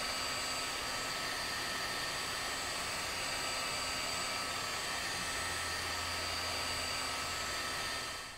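Electric heat gun running steadily, its fan blowing a constant rush of hot air with a faint whine, warming a brake caliper so the paint adheres better.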